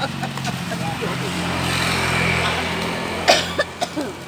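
A motor vehicle passing on the road, its engine noise swelling and fading about halfway through, under faint chatter. Two short sharp sounds near the end.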